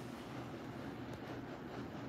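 Faint steady room noise with a low hum and no distinct events.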